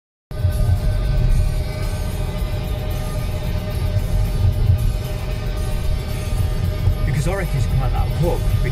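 Car cabin rumble from engine and road while driving, with music playing over it. A voice comes in briefly near the end.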